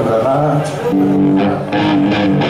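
Electric guitar through an amplifier sounding a few sustained notes, held steady for over a second, with a voice briefly over it.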